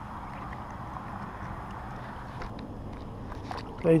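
Steady outdoor noise of water and wind on the camera microphone while standing in shallow bay water, with one sharp click at the very start.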